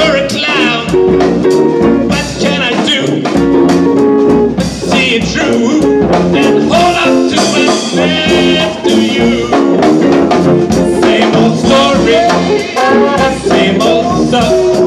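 A live jazz band playing at full level over a steady beat: trumpet and other brass, electric guitar and tuba, with singing voices in the mix.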